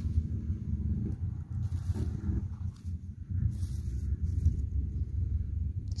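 Steady low rumble of wind buffeting a phone microphone in an open field, with two brief low hums, one in the first second and one about two seconds in.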